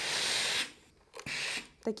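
Steam iron letting out two hisses of steam, a longer one at the start and a shorter one about halfway through, while it presses and shrinks a stretched armhole into shape.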